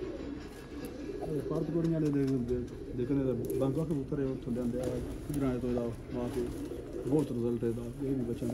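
Domestic pigeons cooing repeatedly, mixed with men's voices.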